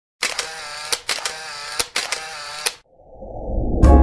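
Intro sound effects: about six sharp clicks over a steady sound, then after a short break a low rising swell that runs into piano music near the end.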